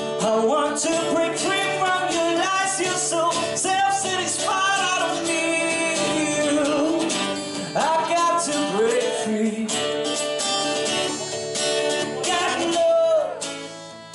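A man singing live into a microphone while strumming chords on an acoustic guitar; the sung line rises and falls over the steady chords, and a phrase tails off just before the end.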